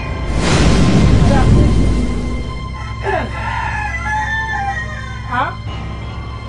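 A rooster crowing over background music. Before it, in the first two seconds, comes a loud noisy burst of sound. The crow falls in pitch, holds, then rises again at the end.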